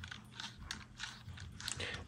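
Faint, irregular small clicks and scrapes of the Ruger Mark IV 22/45 Lite pistol being handled in the hands near its threaded muzzle.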